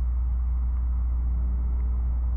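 A steady low rumble, even in level throughout, with nothing else standing out.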